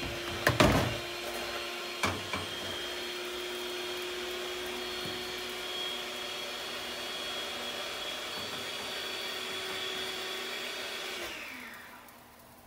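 Steady fan-motor hum with a thin whine, as from a kitchen extractor fan running over the stove. A utensil knocks against the mixing bowl twice near the start, and the hum fades out near the end.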